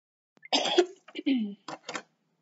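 A woman coughing and clearing her throat: a harsh burst about half a second in, followed by a few shorter throat-clearing sounds.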